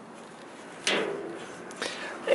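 Fuel filler gas cap being twisted on its neck: a sharp click about a second in, then a fainter click near the end.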